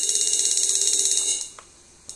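Electronic cymbal sound from a Yamaha DTX700 drum module, triggered from a cymbal pad: a bright, loud crash that starts suddenly and cuts off after about a second and a half, followed by a faint click.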